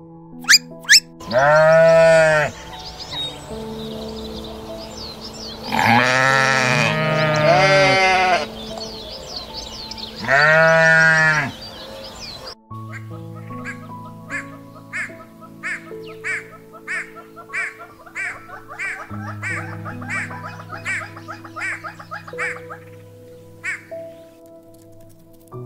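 Loud bleating from a sheep or goat–type farm animal in three bouts during the first half, one bout holding several overlapping calls, over soft piano background music. The music carries on alone in the second half as a run of evenly repeated notes.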